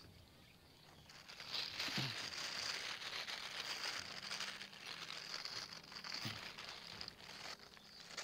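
Plastic wrapping film on a coil of solar cable crinkling and rustling as the cable is handled and pulled from the coil. It starts about a second and a half in and lasts some six seconds.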